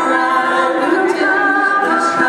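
A women's vocal group singing in harmony, several voices holding long notes on different pitches at once.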